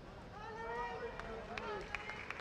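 A person's voice talking in the background, with a few short clicks.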